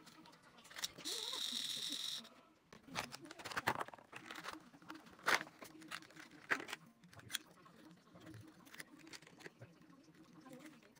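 Hands handling insulin-pump supplies: a harsh steady tearing noise lasts about a second near the start, then comes a run of small plastic clicks and crinkles as a sterile plastic package and pump parts are opened and fitted.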